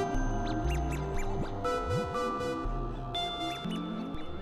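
Electronic drone music from a VCV Rack virtual modular synthesizer patch: held synth tones at several pitches, changing every second or so, over a low bass drone, with short high chirping blips that sweep up and back down in pitch.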